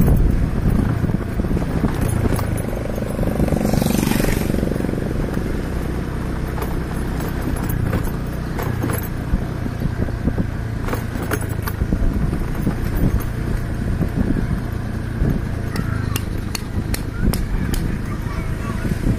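A motorcycle running steadily at low speed, with wind rumble on the microphone. Scattered sharp clicks and rattles come in during the second half.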